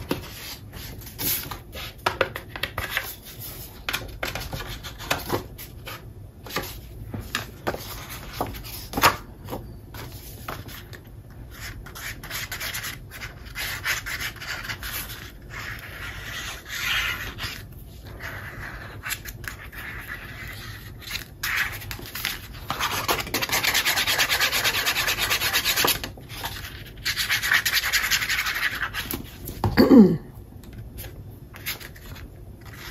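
An ink pad rubbed along the edges of patterned cardstock in many short scratchy strokes, then paper rubbing and handling while the sheet is glued down, with two longer stretches of steady rubbing near the end.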